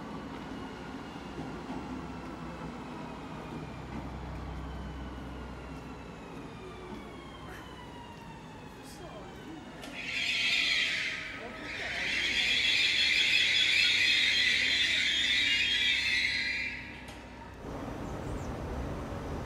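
Train braking: a faint falling whine, then a loud high-pitched brake squeal, a short burst followed by a longer stretch of about five seconds that stops just before the end.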